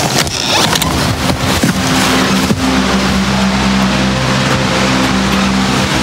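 A doorknob and door clicking open near the start, then a large wall-mounted circulation fan running: a steady motor hum under a rush of air.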